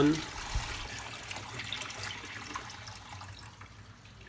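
Salt-water brine draining from a tilted plastic jar into a stainless steel sink, the pour thinning to a trickle and fading away.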